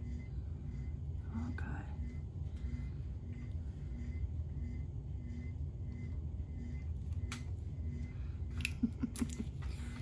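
Steady low room hum with a faint tone pulsing on and off at an even pace, and a few light clicks and taps near the end as craft bottles are handled on the table.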